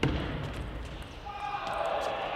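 Table tennis ball knocking back and forth between paddles and the table in a rally: a run of short, sharp clicks. A voice calls out over the last part.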